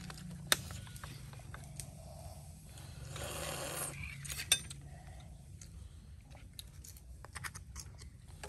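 Metal spoons clicking and scraping against grilled shellfish shells and a plate, a scatter of small sharp clicks. There is a short rushing noise about three seconds in.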